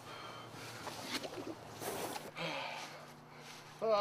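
A man breathing hard in a few rough, noisy breaths while struggling for air after pepper spray in the face.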